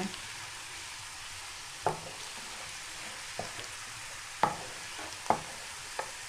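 Sliced onions frying in vegetable oil in a nonstick pan, a steady sizzle, at the start of browning them until golden. A wooden spatula knocks against the pan four times as they are stirred, loudest about two seconds in and again past four seconds.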